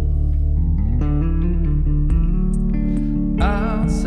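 Electric guitar playing sustained melodic notes over a bass line in an instrumental passage of a song, with a wavering, vibrato-laden phrase near the end.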